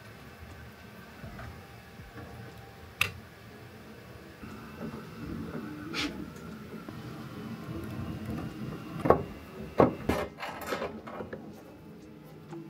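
Faint handling noise of hands working on a 3D printer's tubes, cables and panels, broken by a few sharp clicks and knocks spread through it, the loudest near the end.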